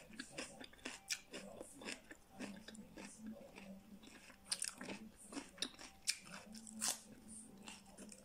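Biting and chewing raw red bell pepper: a run of irregular, crisp crunches.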